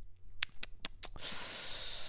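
A quick run of about five sharp computer mouse clicks, followed by a breathy hiss of an exhale close to the microphone for most of the last second.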